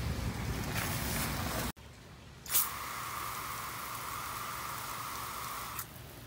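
Garden hose spraying water: a splashing wash of water at first, then, after a short break, a steady hissing spray that starts with a brief loud splash and stops just before the end.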